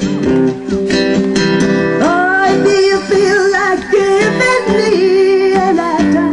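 Live acoustic guitar strummed, amplified through a stage PA; from about two seconds in a singer joins with long held notes that waver in pitch, without clear words.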